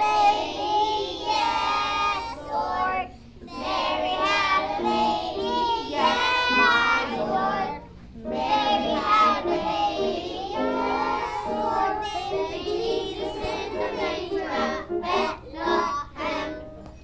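A group of young children singing a Christmas song together, in phrases with brief breaths about three and eight seconds in.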